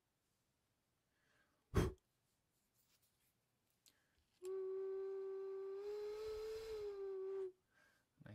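A single sharp knock, then an unfired clay ocarina blown for one steady, strong note of about three seconds, with breath hiss and a slight rise in pitch partway through. The clear note shows the newly cut voicing window is working.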